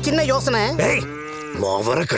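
A man's voice in an exaggerated, swooping delivery, holding one long, slightly falling note about a second in.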